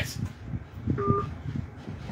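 A single short electronic beep of about a quarter second, about a second in, over low room rumble.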